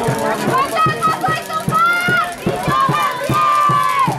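Voices of spectators and players at an outdoor football game shouting and chanting, with two long drawn-out high calls.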